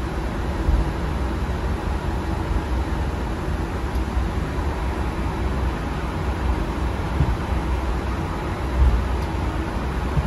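Steady flight-deck noise of an airliner rolling slowly on the runway after landing: a low rumble from the wheels and engines under a hiss of air. Two low bumps stand out, one just under a second in and one near the end.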